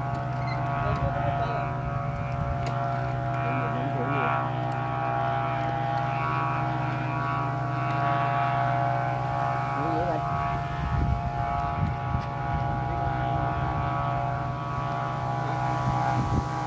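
Kite flutes (sáo diều) on a flying kite sounding a steady chord of several held tones in strong wind, with gusts buffeting the microphone, strongest a little past the middle.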